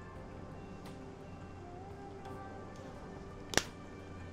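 Faint background music with one sharp plastic click about three and a half seconds in, the flip-top cap of a paint bottle snapping shut.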